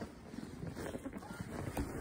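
Soft, irregular footsteps in fresh snow, with faint rustling.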